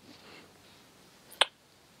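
Quiet room hush broken by a single short mouth click about one and a half seconds in, as the speaker parts his lips to begin talking.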